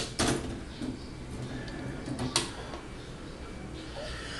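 A small transformer set down on the metal pan of a spring dial scale: two clunks right at the start, then one sharp click a little past two seconds in.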